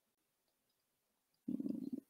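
Near silence, then about a second and a half in, a short low hum of a woman's voice: a hesitation sound in mid-sentence, followed by one more brief murmur.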